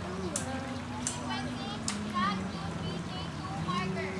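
Children's voices calling and chattering, with a few short splashes of water.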